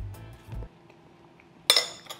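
Background music that fades out under a second in, then a single clink near the end as a metal spoon is set down on a ceramic plate.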